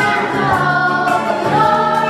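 A group of children singing together in chorus, holding long notes.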